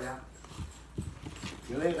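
A few soft, dull knocks about half a second apart, then a girl's voice starting to speak near the end.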